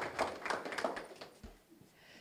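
Scattered applause from a seated audience in a small meeting room: a few irregular claps that thin out and die away about a second and a half in.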